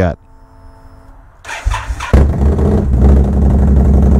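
Indian motorcycle's V-twin engine is cranked on the electric starter about a second and a half in. It catches within half a second and settles into a loud, steady idle, starting readily despite a week's sitting on an older, weaker battery.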